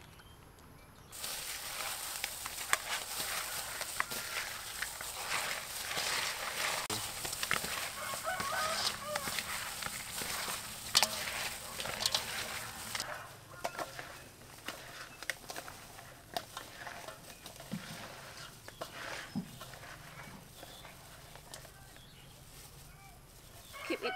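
Gloved hands mixing raw shell-on shrimp with sauces and seasonings in a metal bowl: wet squelching and the clicking of shells, dense for about twelve seconds from a second in, then quieter with scattered clicks. Chickens can be heard in the background.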